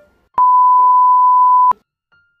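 A single steady electronic bleep, one pure tone a little over a second long, cutting in and out abruptly with a click at each end.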